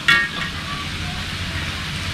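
Stir-fried eel and vegetables sizzling steadily in a wok, with a short high tone right at the start.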